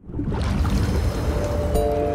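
Outro logo sting: a rushing, surf-like swell of noise with a deep rumble, joined near the end by a suddenly struck chord of sustained tones.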